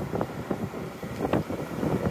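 Nippon Sharyo portable diesel generator running, a steady low engine drone, with irregular gusts buffeting the microphone.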